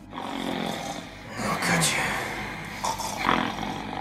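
A man snoring loudly in exaggerated, comic fashion, with two louder snores about a second and a half apart.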